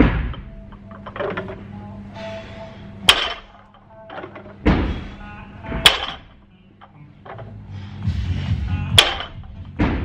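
Barbell loaded to 100 kg with rubber bumper plates being deadlifted for three reps, the plates knocking sharply on the floor about every three seconds, with duller thuds between. Background music plays under it.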